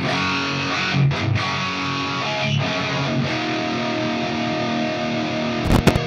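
Electric guitar playing distorted crunch chords through a Line 6 Helix with a TC Electronic Mimiq doubler on, the chords left to ring and changing about two seconds in. Near the end come a few sharp clicks as a switch on the pedalboard is pressed.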